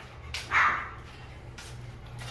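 A Rottweiler puppy gives one short yip about half a second in, over the steady low hum of fans.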